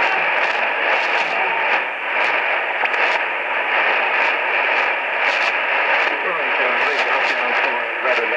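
Weak shortwave AM broadcast on 5020 kHz coming through a Sangean ATS-909X's speaker: heavy hiss with frequent static crackles over a faint voice, and a thin steady tone running under it.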